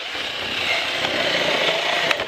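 WORX Zip Snip 4V cordless electric scissors running steadily, its motor-driven blade chewing through a rigid clear plastic clamshell package, and stopping near the end.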